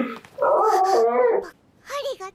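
A cartoon dog's voice on an anime soundtrack: one whining call about a second long, wavering in pitch.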